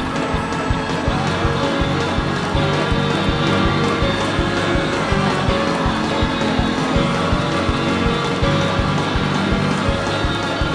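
Live church band playing fast gospel praise music: drums on a quick, steady beat under held keyboard chords and bass, with the noise of a lively congregation mixed in.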